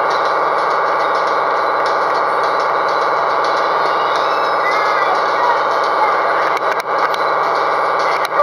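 A steady mechanical drone, holding an even pitch and level, with a few brief voice-like glides about five seconds in.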